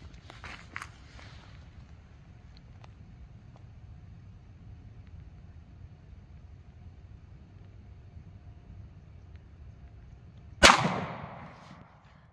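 A single shot from a Smith & Wesson M&P Shield 9mm pistol firing a 115-grain +P solid copper hollow point, near the end, sharp and followed by a brief echo that dies away.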